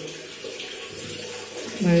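Steady rush of water running from a tap.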